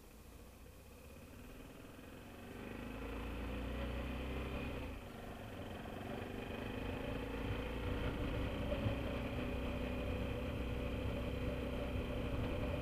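BMW F650GS Dakar's single-cylinder engine running quietly at first, then pulling away and accelerating, its pitch rising. There is a brief drop near the middle, a gear change, and then the engine pulls on at a steady higher level.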